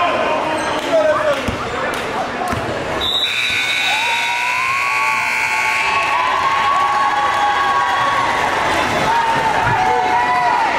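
Gymnasium scoreboard horn sounding: a steady, loud, high-pitched blast that starts suddenly about three seconds in and lasts about three seconds, over voices and gym noise.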